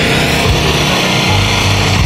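Loud live reggae music from a festival stage's sound system, with a heavy pulsing bass line.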